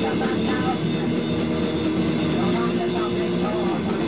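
Raw black metal from a 1994 cassette demo: a dense, distorted wall of guitar held at an even level, with a harsh voice over it.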